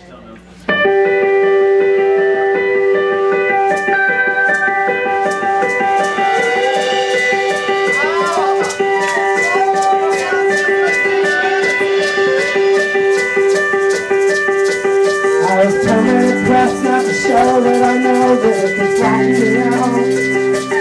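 Live indie folk band starting a song's instrumental opening, under a second in. Guitar and a long held note carry it, a shaker keeps a steady rhythm from about four seconds in, and lower notes join near the end.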